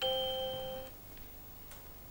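Electronic quiz-show chime as a word on the puzzle board is placed and highlighted: one steady electronic tone that starts sharply and fades out just under a second in.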